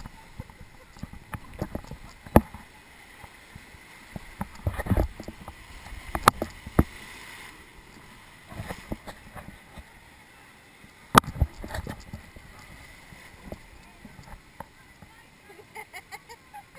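Whitewater rushing and sloshing around a river rapids ride raft, with several sharp knocks and splashes scattered through.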